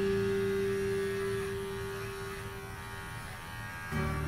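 Cordless pet clipper motor running with a steady buzz as it cuts through a cocker spaniel's neck hair, fading slightly near the end.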